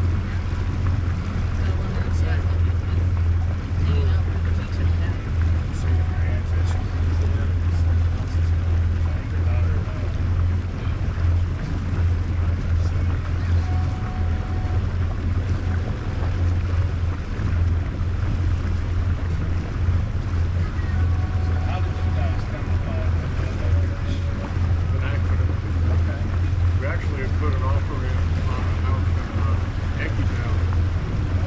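A motorboat's engine running steadily under way, a constant low drone, with wind buffeting the microphone.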